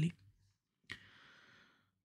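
A man's quiet in-breath through the mouth before speaking, opened by a short mouth click about a second in.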